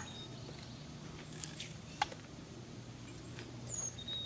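Quiet outdoor ambience: a low steady hum, a few faint high chirps, one sliding downward near the end, and a single sharp click about halfway.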